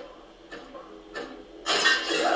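Sound effects from a science-fiction TV episode, heard through the room: faint mechanical noises, then a sudden loud, harsh mechanical noise that sets in near the end and keeps going.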